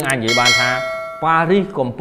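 A bell-like notification ding from a subscribe-button sound effect, after a short click: it rings for about a second and fades.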